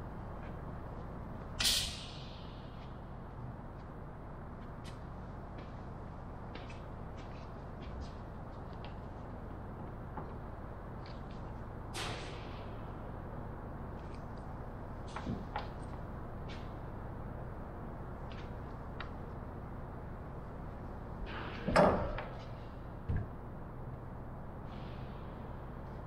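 Scattered clicks and knocks of wood, clamps and hand tools being handled while a plywood bulkhead is fitted into a wooden airframe, over steady workshop room noise. The sharpest knocks come about two seconds in, about halfway, and as a pair a few seconds before the end.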